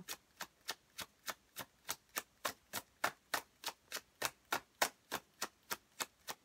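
Tarot cards being shuffled overhand: a steady run of crisp card clicks, about three and a half a second, as small packets drop from one hand onto the deck in the other.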